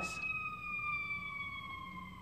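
Ambulance siren wailing as it passes, one long tone slowly falling in pitch.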